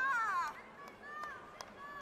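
A loud, high-pitched shout from a taekwondo fighter, a kihap thrown with a kick, lasting about half a second. Two shorter, fainter cries and a few sharp slaps or taps follow.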